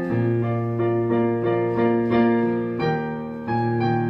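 Digital piano played solo: chords and struck melody notes over a held bass note, changing chord about three and a half seconds in.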